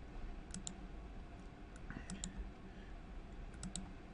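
Computer mouse clicking as points are placed on a CAD spline: three pairs of quick, faint clicks about a second and a half apart, over a low background hum.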